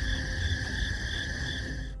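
Night insects: a steady high trill with a higher chirp pulsing about three times a second, over a low rumble.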